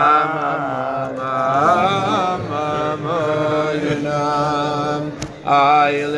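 Men singing a slow Chasidic niggun, holding long notes and sliding between pitches, with a new phrase starting louder near the end. A brief sharp click sounds just before that.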